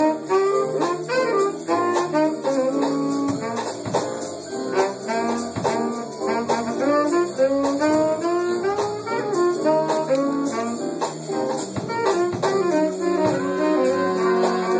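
Live jazz horn section of saxophones and trumpets playing a busy ensemble line together, settling onto a held chord near the end.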